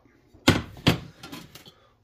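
Two sharp knocks about half a second apart, then a few lighter taps, as the emptied harvest bowl is handled and set down beside a plastic tray dryer.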